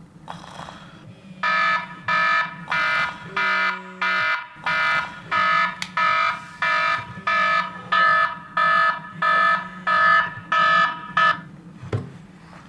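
A phone alarm beeping: a repeated electronic tone at about two beeps a second, starting a little over a second in and stopping shortly before the end.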